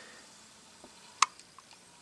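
Quiet room tone with one sharp, short click a little over a second in and a few faint ticks around it.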